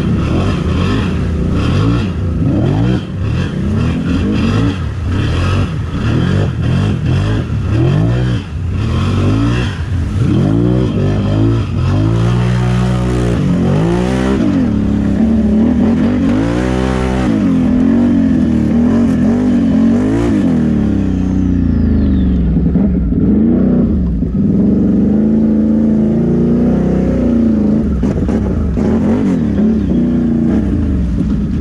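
Can-Am Renegade XMR 1000R ATV's V-twin engine revving up and down over and over, its pitch rising and falling in quick sweeps, loudest through the middle. Water splashes over the engine noise through the first part as the machine ploughs through a flooded channel.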